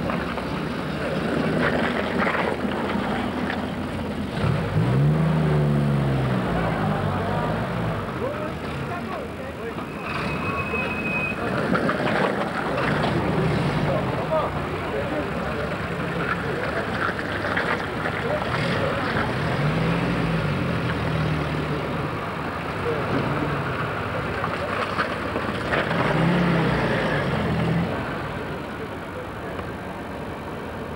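Engines of World War II-era army jeeps and trucks running on a street, the engine note rising and falling as vehicles pull past, most clearly about five seconds in and again near twenty and twenty-six seconds. Indistinct voices run underneath, and a brief high tone sounds about ten seconds in.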